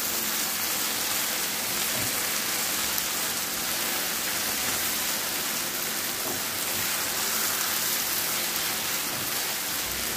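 Okra, tomatoes and peppers sizzling steadily in an open frying pan as a spatula stirs them, with a few faint scrapes against the pan.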